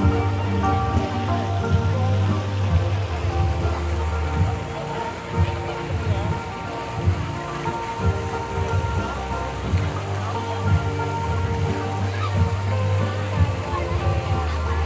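Fountain water falling and splashing steadily into its pool, with live music playing over it.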